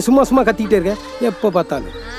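A man speaking loudly in Tamil, his voice quavering, over background music with held notes.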